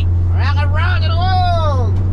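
Delivery van driving at speed, heard from inside the cab as a steady low engine and road hum. A man's voice joins about half a second in with long, drawn-out falling tones.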